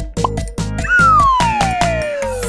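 Upbeat cartoon background music with a steady beat. About a second in, a long whistle-like note glides steadily downward in pitch and stands out as the loudest sound, a cartoon sliding sound effect.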